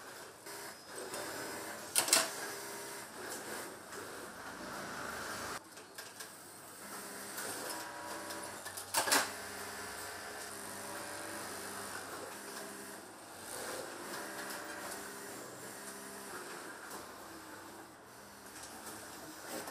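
Garment workshop machinery: industrial sewing machines running in short bursts under a steady clatter. Two sharp strikes, about two seconds in and again about nine seconds in, the first matching a snap-button press stamping a button.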